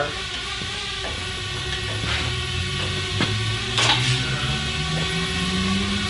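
A steady low hum, edging slightly higher in pitch near the end, with a few scattered knocks and clatters of gear being handled.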